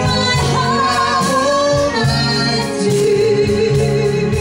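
Live band playing a 1950s-style song, with a man and a woman singing a duet over drums, keyboard and guitar. A long note is held through the second half.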